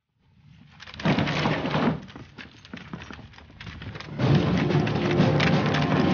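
A squad running in a crowd, many footsteps on gravel and paving in a dense patter, loudest from about one to two seconds in and again from about four seconds in. A low steady music bed comes in under the steps near the end.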